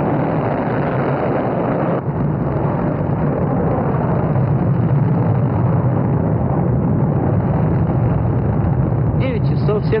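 Rocket engines running at liftoff: a loud, steady noise with a heavy low rumble, its upper part thinning slightly about two seconds in.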